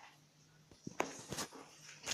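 A chinchilla moving at the metal bars of its cage, right up against the microphone: a faint steady hum, then a few sharp clicks and taps in the second half.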